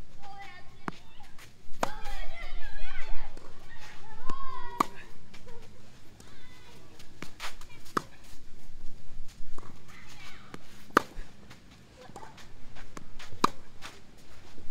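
Tennis balls struck with a Head Extreme MP 2022 racket during a baseline rally: a sharp pop of ball on strings about every two to three seconds, six in all, with faint footsteps on the clay court between them.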